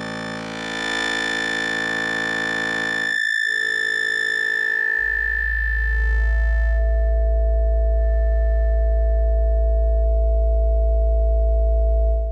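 Synthesis Technology E350 Morphing Terrarium wavetable oscillator holding one steady low pitch while a morph knob sweeps through its bank C analog-style waveforms, such as squares and sawtooths. The timbre shifts in steps as the knob turns: there is a brief dip about three seconds in, then the tone turns fuller and duller from about five to seven seconds in.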